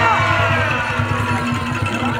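A live kentongan (bamboo slit-drum) ensemble playing a steady, rhythmic beat with a repeated pitched note. Crowd shouts die away just as it begins.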